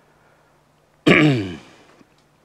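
A man gives a single throat-clearing cough close to a handheld microphone about a second in; it starts suddenly and its pitch falls as it fades.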